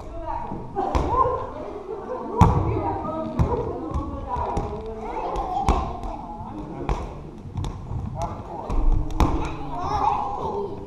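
Rubber playground balls bouncing and thudding on a hardwood gym floor, a dozen or so irregular impacts, with voices calling out throughout.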